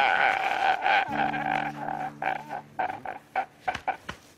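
A man sobbing in short, broken gasps and catches of breath, coming choppier and more broken in the second half.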